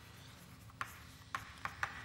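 Chalk on a blackboard as letters are written: faint scratching with several short, sharp taps of the chalk, mostly in the second half.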